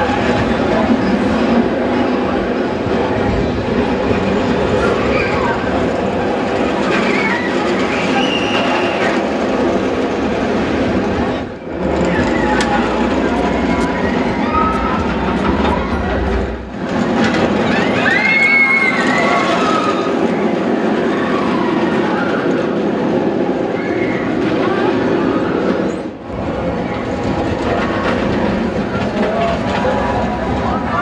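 Euro-Star inverted steel roller coaster trains running over the track, a continuous loud rumble with occasional short squeals. Fairground crowd voices run underneath. The sound dips briefly three times.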